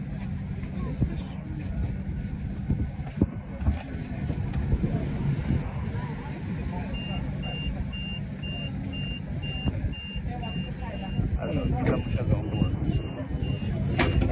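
Running noise inside a Siemens Combino NF12B Supra low-floor tram on the move: a steady low hum and rumble. From about halfway, a quiet high beep repeats about twice a second.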